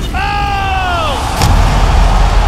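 A single high-pitched yell about a second long, sliding down in pitch. It is followed about one and a half seconds in by a thud and a loud, steady crowd roar.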